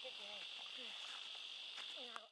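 Insects chirring in one steady, high-pitched drone.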